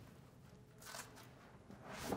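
Near silence with a faint rustle of a banner about a second in and again near the end, as it is raised on its stand.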